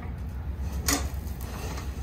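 Metal grain-vac tubing being handled, with one sharp clank about a second in and a few lighter knocks, over a steady low rumble.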